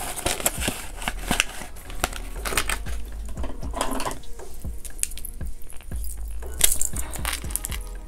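Paper banknotes rustling as they are slid into a cash binder pocket, with short taps and clicks of handling throughout and a few louder ones near the end, over quiet background music.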